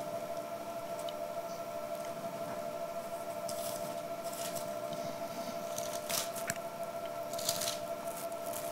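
Bible pages being leafed through at a lectern: a few short rustles of paper over a faint steady tone.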